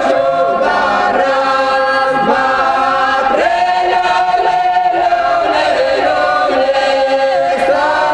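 Ukrainian traditional folk song sung a cappella by a small vocal ensemble in several parts, the voices gliding between notes and holding long chords.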